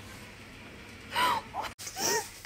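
A woman's brief high-pitched gasping laugh about a second in, after a second of faint room hiss; the sound cuts off abruptly just before the end.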